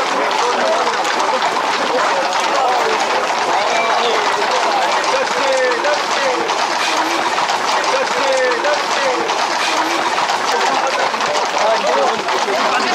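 Many horses' hooves clattering steadily on an asphalt road as a pack of Camargue horses moves along at a walk. A crowd shouts and calls all around, with the footsteps of people running alongside.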